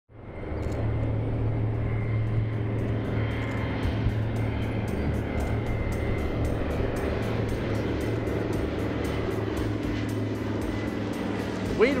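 Steady low drone of DC-3 twin radial piston engines and propellers passing overhead, fading in at the start. Music with a light steady beat plays over it.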